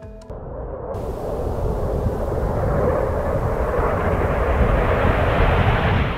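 Bloodhound SSC jet car's jet engine running at speed: a dense rushing roar that grows steadily louder.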